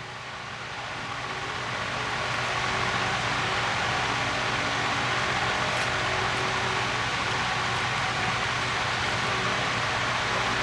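Steady hiss of an electric fan running, with a faint hum, swelling over the first couple of seconds and then holding level.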